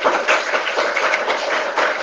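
Audience applauding, many hands clapping together at the end of a talk.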